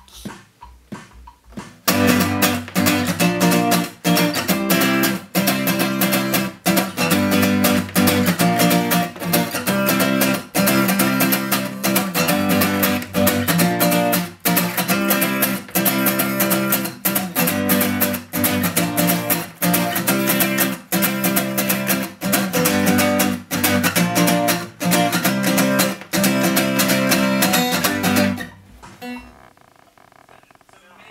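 Steel-string acoustic guitar strummed in a steady rhythm. It starts softly, comes in fully about two seconds in, and stops near the end.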